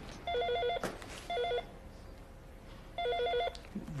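Electronic office desk telephone ringing: three short warbling rings, each trilling rapidly between two pitches, with gaps between them.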